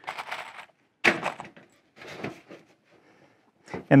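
Workbench handling noises: deck screws rattled in a small plastic box and a cordless impact driver set down on the bench, heard as a few short clattering knocks, the sharpest about a second in.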